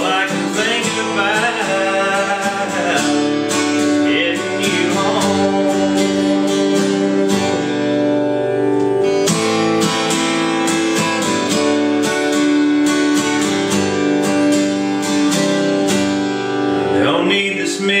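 Taylor cutaway acoustic guitar strummed in a steady rhythm, sustained chords ringing through an instrumental passage of a country song; a man's singing comes back in right at the end.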